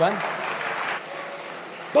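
Brief applause from the seated members in the chamber, strongest in the first second and then thinning out.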